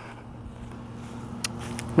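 Faint steady low hum of outdoor background, with two small clicks about a second and a half in.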